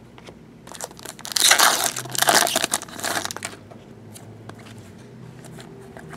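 Foil trading-card pack wrapper being torn open and crinkled, in a few loud crackling bursts from about a second in to halfway through, followed by soft handling of the cards.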